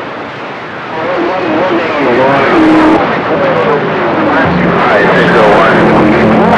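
CB radio receiver on channel 28 picking up distant skip stations: static hiss with several overlapping signals breaking in about a second in, heard as wavering whistles sliding up and down and garbled, distorted voices.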